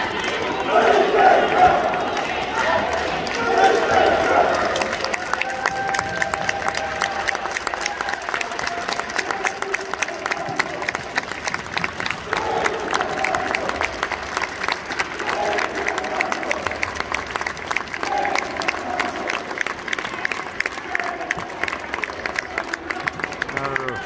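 A small crowd of fans shouting together for the first few seconds, then steady hand clapping from fans and players with scattered voices.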